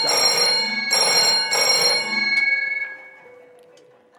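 Old-style telephone bell ringing twice, then the ring dies away. It signals an incoming call.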